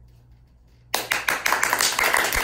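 Quiet room tone, then an audience breaks into applause about a second in, many hands clapping at once.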